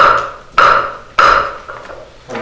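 Wooden gavel struck three times on its block, about half a second apart, each knock ringing briefly: the council chairman's three strikes declaring the session closed.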